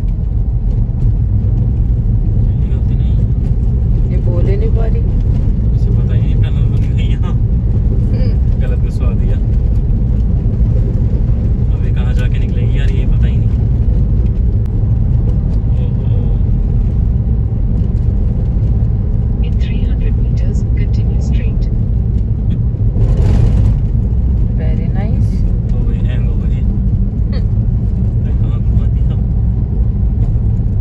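Steady low road and engine rumble of a moving car, heard from inside the cabin. A short rush of louder noise comes about 23 seconds in.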